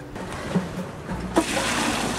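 Maple sap poured from a galvanized sap bucket into another metal bucket: a splashing gush of liquid that starts about one and a half seconds in.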